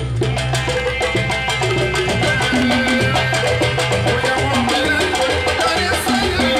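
Live Saudi Jizani folk music: large hand-held frame drums beaten in a fast, dense rhythm over an electronic keyboard's bass line and melody.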